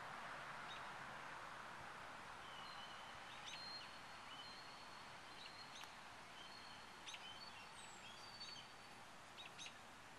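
Quiet outdoor ambience: a faint hiss, with thin, high, steady bird calls from about two and a half seconds in, and a few faint ticks.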